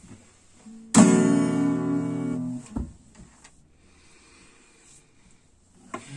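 A single chord strummed on an acoustic guitar about a second in, ringing for about a second and a half before it is cut off short, followed by a knock.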